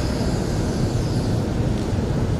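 Low, steady rumble of hall and microphone background noise in a pause between phrases of a Quran recitation, with no voice.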